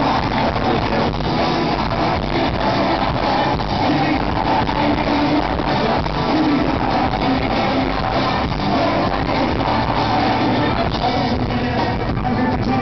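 Loud live gypsy-punk band with a male voice singing over accordion, guitars and drums, recorded from the audience.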